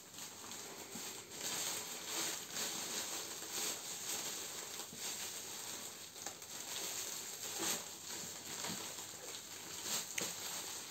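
Clear plastic wrapping film crinkling and crackling in small irregular bursts as a child's hands pull and tear it off a large multipack of toilet paper rolls.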